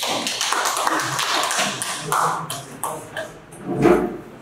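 A small group applauding, dense at first and thinning to scattered claps after about three seconds, with a loud low thump near the end.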